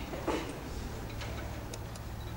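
Auditorium room noise while the audience waits: a steady low hum with scattered small clicks and rustles, and one brief louder noise about a third of a second in.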